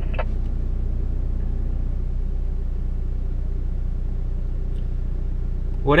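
Jeep Wrangler engine running steadily, a low even drone heard from inside the cab.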